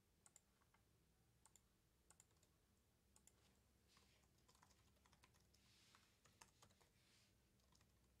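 Faint computer keyboard typing: a few scattered clicks, then quicker runs of key taps from about three seconds in.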